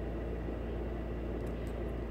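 Steady low hum and hiss of room noise, with no distinct rattle standing out.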